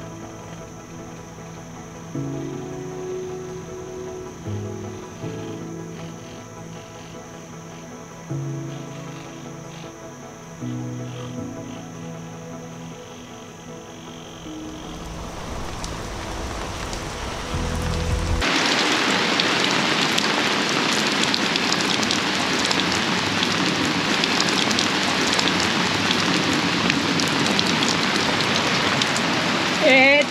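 Heavy rain falling, a steady even hiss that fades in after a stretch of soft background music and comes on full a little past halfway.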